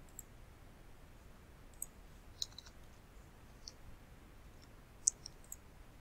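Computer mouse clicks, about six short, sharp clicks spread unevenly over a few seconds against a faint steady hiss.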